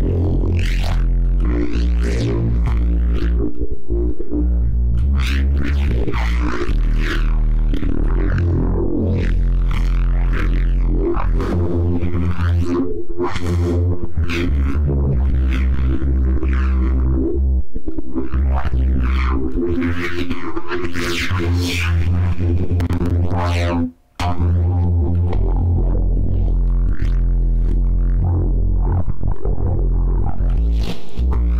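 Neuro bass patch built in Bitwig's Poly Grid, playing through a Kilohearts Multipass 'Basilisk Filter' preset with random modulation depth turned up: a heavy, sustained low bass line whose upper tones sweep and shift constantly. It cuts out briefly about 24 seconds in.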